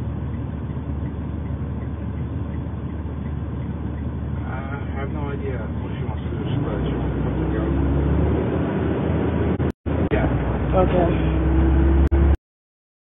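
Steady engine and road rumble heard inside a tow truck's cab while driving, growing louder about halfway through as it picks up. The sound cuts out briefly near the end.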